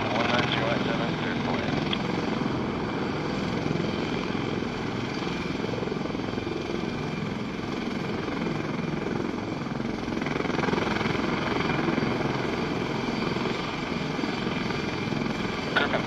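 MH-53E Sea Dragon helicopter taxiing on the ground, its three turboshaft engines and main rotor running with a steady, continuous noise.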